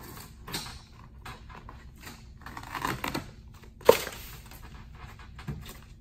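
Peel-and-stick ice and water shield membrane rustling and crinkling as it is handled and pressed into a roof valley, with scattered clicks. There is a longer rustle a little before the middle and a single sharp knock just after it, the loudest sound.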